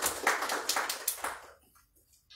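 A small audience clapping, dying away about a second and a half in.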